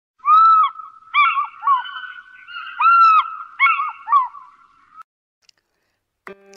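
Birds calling loudly: a run of about eight short, arched calls, each about half a second or less, overlapping at times, then cutting off abruptly about five seconds in.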